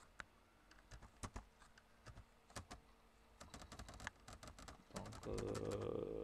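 Computer keyboard typing: scattered key clicks, then a quick run of key presses as text is deleted with repeated Backspace presses. Near the end a louder, steady, low hum comes in for about a second and a half.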